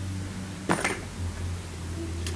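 Coins dropped into a cardboard coin chute made from a paper roll, to test that they fall through: two quick metallic clinks less than a second in, over a steady low hum.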